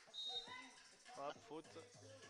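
A referee's whistle: one short, steady, high blast that stops play for a kicked-ball (foot) violation.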